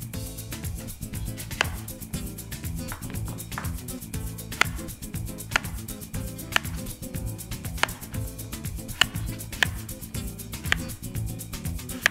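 A chef's knife cutting peeled sweet potato into chunks on a wooden cutting board, each cut ending in a sharp knock of the blade on the board, roughly once a second, over background music.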